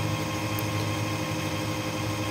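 Steady hum of a running computer power supply, a low drone with a few fixed higher tones above it.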